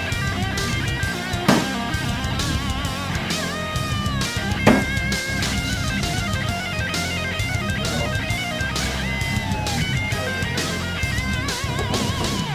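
Rock music with electric guitar and drums playing throughout. Two sharp knocks cut through it, about a second and a half in and again near five seconds, the second the loudest: a thrown SKS bayonet striking the wooden plank target.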